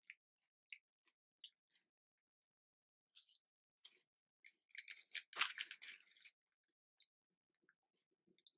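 Paper food packaging crinkling and crackling as hands work through a fries carton and sandwich wrapper. It comes as scattered light crackles, then a denser, louder run of crinkling about halfway through.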